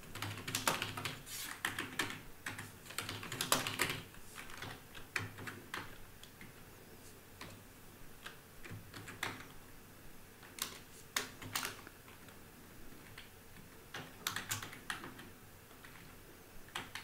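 Typing on a computer keyboard: a quick run of keystrokes over the first few seconds, then scattered single keys and short bursts of typing.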